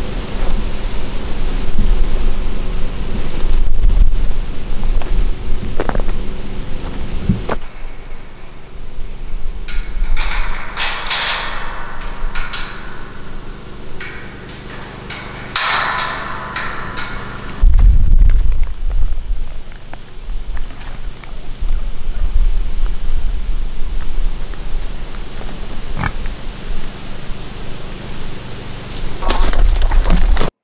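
Outdoor farmyard sound with a steady low rumble of wind on the microphone, broken by two bursts of loud animal calling, about ten and sixteen seconds in.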